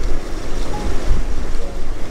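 Wind rushing over the microphone as a low rumble, with the sea washing and surging around the boat.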